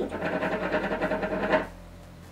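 Hookah water bubbling in a rapid, even gurgle as someone draws smoke through the hose. It stops suddenly about one and a half seconds in.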